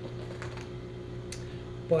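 A few light clicks and taps as hands press and work along the edge of a vinyl padded dash pad, over a steady low hum.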